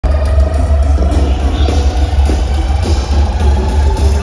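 Live concert music over a large festival PA, heard from within the crowd, with a heavy, booming bass. A sustained pitched synth or vocal line runs above it.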